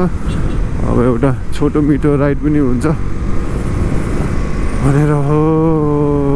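Motorcycle riding noise, a constant low rumble with wind on the microphone. Over it a man's voice is heard, talking about a second in and then holding one long, slightly wavering note near the end.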